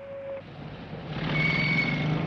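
City street traffic fading in about half a second in and growing louder: the running of car engines and tyres, with a brief thin high tone near the end.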